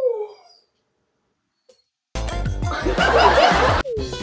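A short laugh that falls in pitch and fades within the first half second, then silence, then loud music cutting in about two seconds in.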